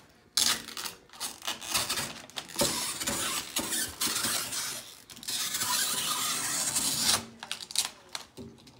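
A utility knife slicing through tensioned screen-printing mesh and its plastic sheet along the edge of an aluminium frame, a rasping, tearing cut in several long strokes with brief pauses.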